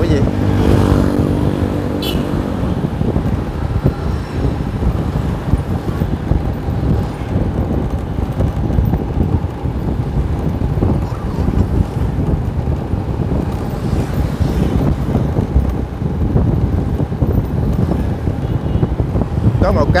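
Wind rushing over the microphone and road noise while riding along a city street in traffic. A pitched engine hum sounds in the first two seconds, and a short click about two seconds in.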